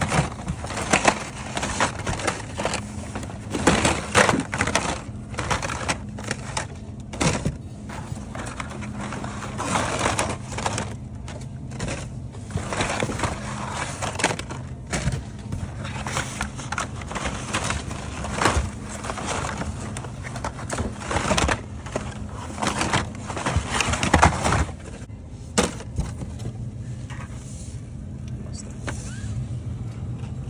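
Carded Hot Wheels cars being shuffled by hand in a bin: cardboard cards and plastic blisters scraping, rustling and clacking against each other in irregular bursts. The jacket sleeve's nylon swishes along, over a low steady hum. The handling eases off near the end.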